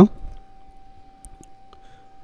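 A few faint clicks and light taps of a pen against paper as writing begins, over a faint steady tone.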